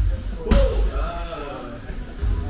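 A single sharp smack about half a second in, a strike landing in Muay Thai sparring, over background music and a voice.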